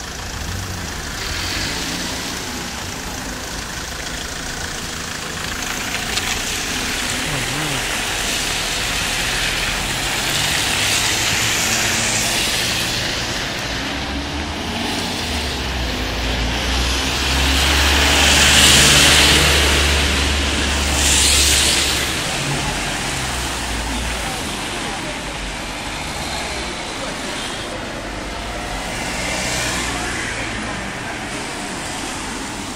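Road traffic on a town street, with cars passing. A heavy vehicle's engine hums low for several seconds in the middle, and the loudest passes come in the second half.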